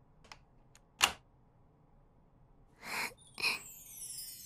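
Key worked in a door lock: a few light metallic clicks, then a sharper click about a second in as the lock turns. Two short soft noisy sounds follow near the end, and chime-like falling music tones start just before it ends.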